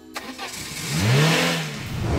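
Outro sound effect of a car engine revving: a swelling rush of noise with a tone that rises and then falls, loudest just after a second in, followed by a second swell near the end.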